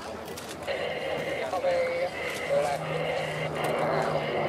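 Indistinct voices of spectators nearby over the distant drone of a formation of Merlin-engined warbirds, an Avro Lancaster with a Hawker Hurricane and Supermarine Spitfire; a steady low engine hum comes in about halfway through.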